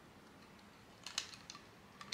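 A few faint plastic clicks about a second in, as the old refill pan is squeezed and pried loose from a Chanel powder foundation compact.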